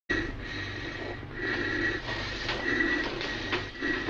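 Hissing and wheezing from an oven that swells and fades unevenly, over a steady high whine and low hum.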